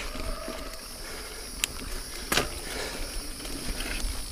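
Niner Jet 9 RDO mountain bike rolling over a dirt singletrack: steady tyre and trail noise with a low rumble, and two sharp clicks from the bike about a second and a half and two and a quarter seconds in.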